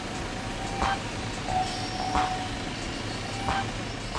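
Street sound of a car in deep snow: a car running under a steady background rush, with a few brief knocks spaced a second or more apart.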